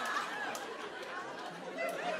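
Audience laughter and murmur in a comedy club, dying away.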